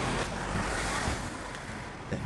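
Wind buffeting the camera microphone outdoors: a steady rushing noise that eases about halfway through.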